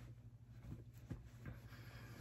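Near silence: a faint steady low hum, with a few soft brushing sounds of a bath towel pressed and rubbed against the face.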